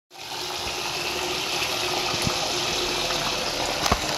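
Steady rush of running water, with a sharp knock just before the end.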